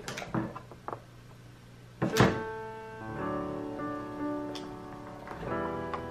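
A few light clicks and knocks as scissors and a gingerbread piece are handled on a tabletop, then a sharp thunk about two seconds in. After it, instrumental background music of held notes runs on.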